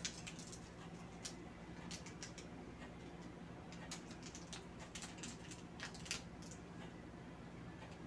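Faint scattered clicks and rustles of a plastic syringe and needle being handled and fitted together, over a steady low hum.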